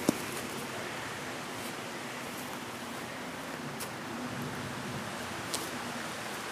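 Steady, even rush of a nearby creek's flowing water, with one light knock right at the start.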